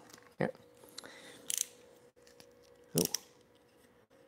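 A few short, faint clicks and scrapes from a snap-off utility knife being handled while trimming vinyl, its blade spent.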